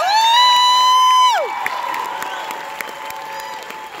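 Audience cheering and applauding, led by one high-pitched whoop that rises, holds for about a second and then falls away.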